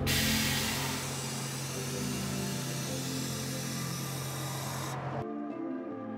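Air suspension on a Tesla Model 3 hissing as air flows through the valves to change ride height: a steady hiss that stops abruptly about five seconds in, over background music.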